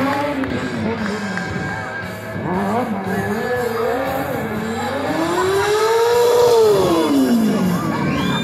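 A stunt motorcycle's engine revving up and down as the rider performs, with one long rise and fall in pitch in the second half.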